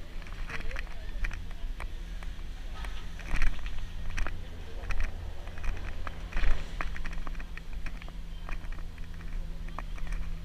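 Footsteps and handling knocks from a handheld camera carried along a walking path, as a string of short irregular clicks, over a steady low rumble.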